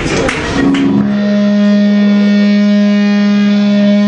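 Live hardcore band's amplified electric guitar: a few sharp hits in the first second, then a single note held and ringing steadily.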